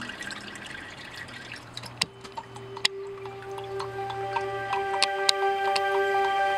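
Water dripping and trickling back into a tub of paper pulp from a wooden mould and deckle as it is lifted out, with a few sharp drops. Soft background music with long held notes comes in about two seconds in and grows louder.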